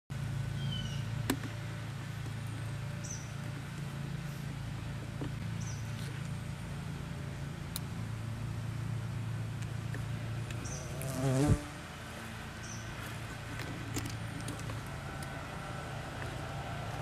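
A bee buzzing steadily in flight close by. Its buzz wavers in pitch and swells loudest as it passes nearest about eleven seconds in, then falls away.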